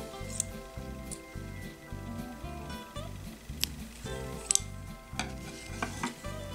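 Quiet background music of held notes, with a few light clicks and taps as the beaded bracelet and its metal clasp are handled.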